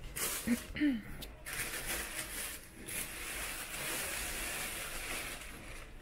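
A thin plastic carrier bag of fresh greens rustling and crinkling as it is handled and moved, with two short hummed sounds from a person in the first second.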